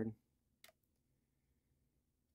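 A single short click from the trading cards being flipped and shuffled in the hand, about half a second in; otherwise the room is nearly silent.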